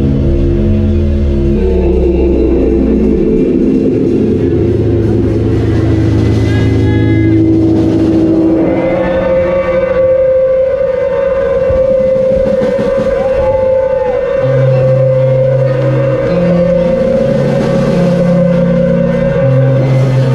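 A live band playing instrumental hip-hop and jazz on keyboards, electric guitar, bass and drums, with a DJ on turntables. Sustained keyboard chords and bass notes, a few notes bending in pitch, and one long held note from about nine seconds in.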